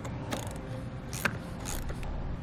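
Socket ratchet clicking in three short bursts as it loosens the nut on a car battery's positive terminal post.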